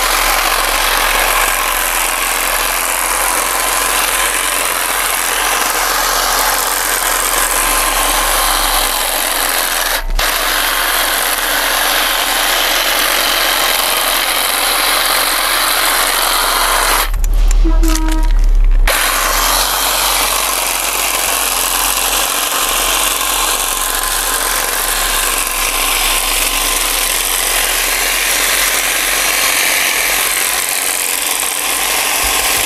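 Electric hedge trimmer running steadily, its reciprocating blades cutting through thuja foliage as it is drawn along the tree. About seventeen seconds in, the cutting sound breaks off for about two seconds and a low rumble takes its place.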